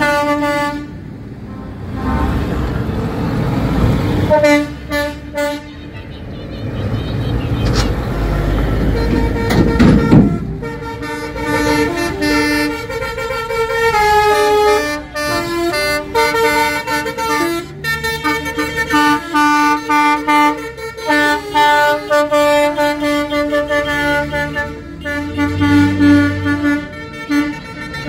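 Trucks driving past with diesel engines running, and truck air horns blowing. From about ten seconds in, a multi-note musical air horn plays a tune of stepping notes.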